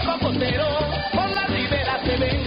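Upbeat song with singing over a regular bass rhythm.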